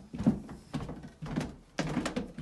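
Footsteps going down carpeted stairs: dull thuds, about two or three a second.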